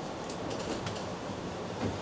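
Steady room noise in a hall, a low hum and hiss, with a few faint clicks in the first second and a soft knock near the end.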